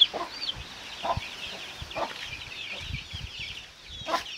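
Many chicks peeping in a steady, overlapping chorus of high, short chirps, with a few lower clucks from a hen.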